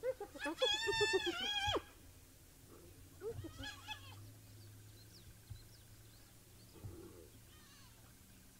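Spotted hyenas calling during a squabble over food: a quick run of short giggling notes, then a high, wavering cry about a second long that cuts off sharply. A shorter cry follows about three seconds in, and a faint one near the end.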